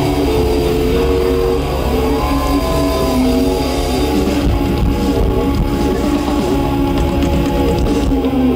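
Rock band playing live through a festival PA: an instrumental passage of electric guitar and keyboard holding long notes over bass and drums.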